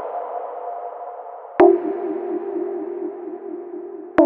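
Prophanity software synthesizer, an emulation of the Sequential Circuits Prophet 5, playing a patch demo. The tail of earlier notes fades out. About one and a half seconds in, a single low note starts with a click and a fast wavering vibrato, then holds and slowly fades.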